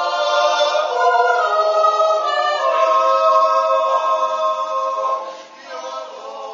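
Mixed Swiss yodel choir singing a Jutz, a wordless natural yodel, a cappella in sustained full chords. The voices drop away briefly between phrases near the end, then come back in.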